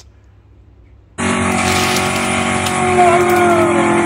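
Race-car sound effect dubbed over the diecast race start: engines running, coming in suddenly about a second in, with a pitch that falls away near the end.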